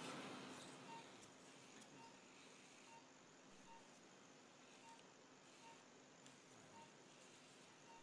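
Near silence: faint room tone with a faint short beep repeating about once a second.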